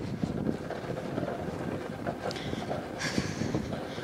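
Wind buffeting the microphone: a rough, steady rumble and hiss that grows brighter about three seconds in.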